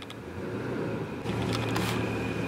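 A 2021 Toyota 4Runner's 4.0-litre V6 running at low speed as the SUV is driven slowly in: a steady low rumble, with a steady hum joining about halfway through.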